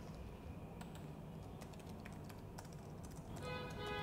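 Faint computer keyboard typing, scattered key clicks while form details are entered. A brief musical tone comes in near the end.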